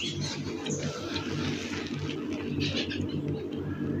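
Quiet bird calls.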